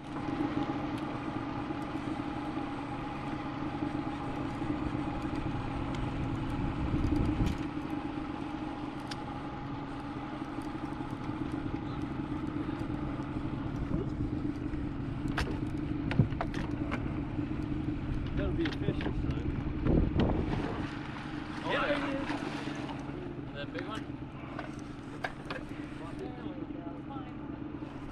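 Boat motor running steadily, with a few knocks over it.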